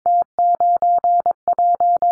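Morse code sidetone at 22 wpm, a single steady pitch keyed in dashes and dots spelling the callsign prefix T91 (dash; dash-dash-dash-dash-dot; dot-dash-dash-dash-dash), the prefix for Bosnia and Herzegovina.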